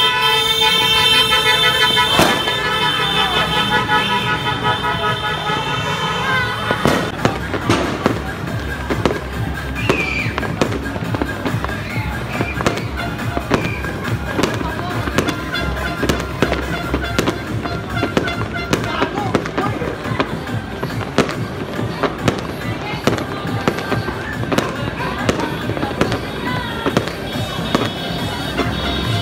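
Fireworks and firecrackers going off in a dense, irregular barrage of sharp pops and bangs. For the first seven seconds or so a horn blares over them in several tones at once, then stops.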